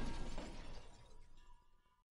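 The tail of a glass-shattering crash dying away, fading to near silence about a second and a half in.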